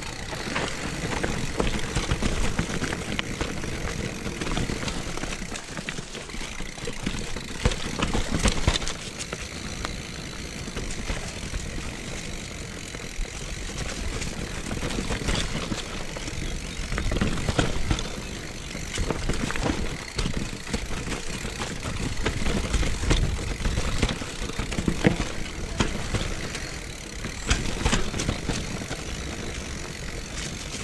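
Mountain bike riding down a rocky, leaf-covered singletrack: tyres crunching over dry leaves and stones, with frequent short rattles and knocks from the bike and irregular low rumbling on the microphone.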